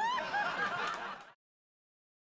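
A high-pitched vocal squeal that rises sharply, then wavers up and down like a titter, and cuts off abruptly after about a second and a quarter.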